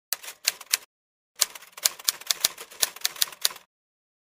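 Typewriter keys clacking as a sound effect: a short run of a few keystrokes, a pause of about half a second, then a longer, quicker run that stops shortly before the end.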